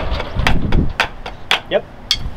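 Wooden drumsticks striking a drum practice pad in an even pulse, about two sharp taps a second, with two drummers playing together.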